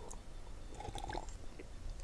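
Quiet room tone with a low hum and a few faint, soft clicks near the microphone, like small mouth noises.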